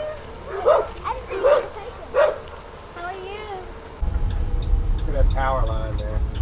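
A dog barking, three short barks about one every three-quarters of a second, followed by a brief whine near three seconds in. About four seconds in the sound changes to the steady low rumble of a bus running, heard from inside it, with a voice.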